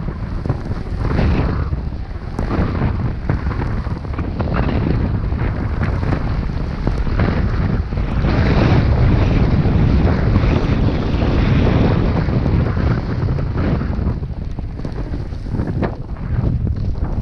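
Wind rushing over an action camera's microphone during a fast downhill run on snow, a steady loud buffeting rumble, with the hiss and scrape of edges carving the groomed snow underneath.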